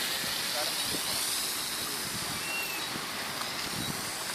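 The electric motor and propeller of a small RC plane whining high overhead, the pitch rising and sliding as it flies past and away, over a steady background hiss.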